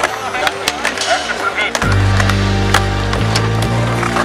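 Skateboard clacks on concrete, with sharp knocks of the board's tail and wheels as tricks are tried. Background music plays along, and a heavy bass line comes in about halfway through.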